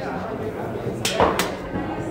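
Two sharp knocks about a third of a second apart, about a second in, over a background murmur of people talking in a hall.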